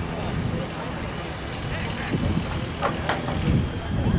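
Wind on the microphone, with distant voices of players and spectators on an open field. A few sharp clicks come about two and a half to three seconds in, and a thin high steady tone starts at about the same time.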